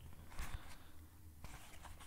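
Faint scraping and rustling of a nylon webbing belt being slid into a plastic ratchet belt buckle by hand, with a light click about a second and a half in.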